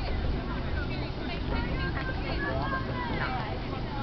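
Players and spectators calling and shouting across an outdoor soccer field, over a steady low rumble.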